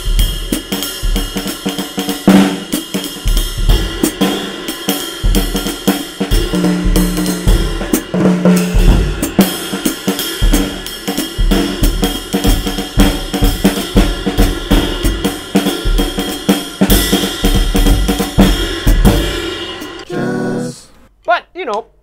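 Acoustic drum kit being played with sticks: snare and bass drum strokes under a constant wash of ride and hi-hat cymbals. The playing stops about twenty seconds in and the cymbals ring out.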